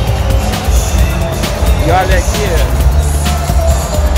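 Loud music with heavy bass, with voices mixed in.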